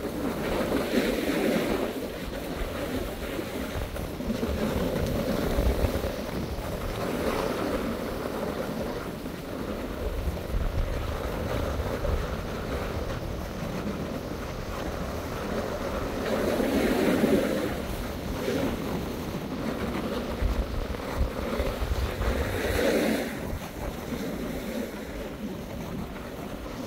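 Wind buffeting the phone's microphone while sliding downhill, with the hiss and scrape of edges on groomed snow; the rush rises and falls in swells every few seconds.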